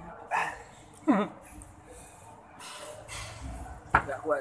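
Two short yelp-like vocal calls, each falling in pitch, near the start and about a second in. Then a person slurps up a mouthful of instant noodles.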